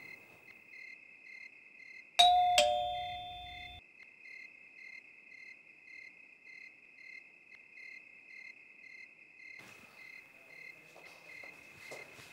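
Two-note ding-dong doorbell chime about two seconds in, a higher note falling to a lower one and ringing out for just over a second, over steady cricket chirping.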